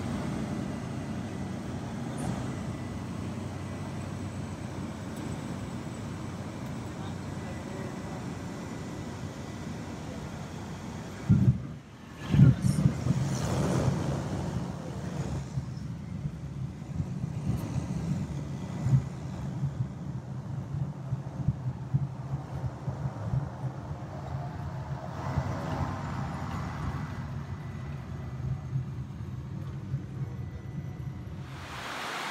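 Single-engine light aircraft's piston engine droning steadily, heard from inside the cabin as the plane rolls along a grass airstrip. Two loud knocks come a second apart near the middle.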